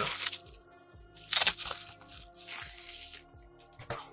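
Plastic bubble-wrap packaging crinkling and tearing in a few short bursts as a hardcover book is pulled out of it, the loudest about a second and a half in. Soft background music plays underneath.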